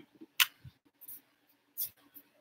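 Two short, sharp clicks about a second and a half apart, with a few fainter ticks and a faint steady hum underneath.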